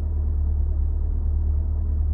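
A steady low rumble inside a car's cabin, even in level throughout, with nothing else standing out.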